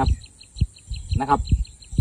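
A pause in a man's talk, with one short spoken sound a little past a second in. Under it runs a faint, rapid, even chirping of about six calls a second, with a couple of low thumps.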